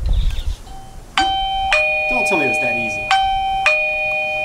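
Eufy video doorbell chime ringing a two-note ding-dong twice: a higher tone and then a lower one, the second press about two seconds after the first, each note ringing on. It is a test press that shows the newly installed doorbell and chime are paired and working.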